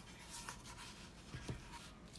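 Faint scratchy strokes of a marker or brush drawn across a hard surface, with a soft knock about a second and a half in.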